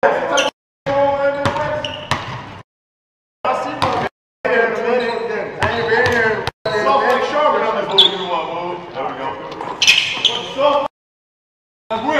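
Basketballs bouncing on a gym court under men's voices. The sound drops abruptly to dead silence several times, where words are muted out.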